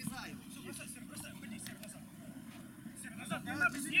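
Players' voices calling out on the pitch, faint and scattered at first, with several voices overlapping near the end, over a steady low background rumble.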